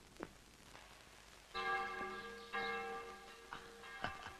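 A bell rung twice, first about halfway in and again a second later, each strike ringing on with several clear overtones and fading away.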